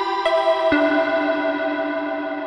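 Access Virus C synthesizer, run in the DSP56300 emulator, playing a preset with a bright, many-harmonic tone. The note changes twice in the first second, then the last note is held and slowly fades.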